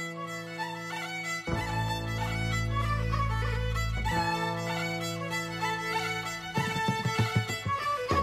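Instrumental traditional Irish music: a fiddle playing a quick tune over sustained accompanying chords that change every two to three seconds, turning more rhythmic near the end.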